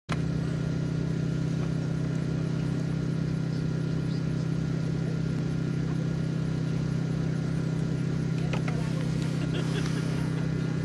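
A steady low mechanical hum with a slow, even pulsing beneath it, and a few light clicks near the end.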